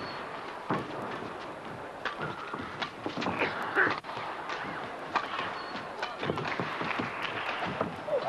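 Badminton rally: sharp racket hits on the shuttlecock and players' footfalls on the court, irregularly spaced, over a low crowd murmur.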